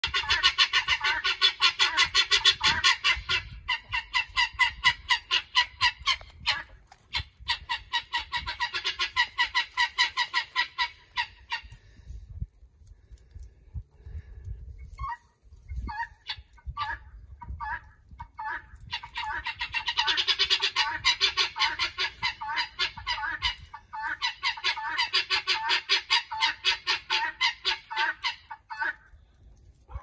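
Helmeted guineafowl calling, a fast run of harsh, repeated notes, several a second. The calling thins to scattered single notes for several seconds in the middle, then picks up again in long runs until shortly before the end.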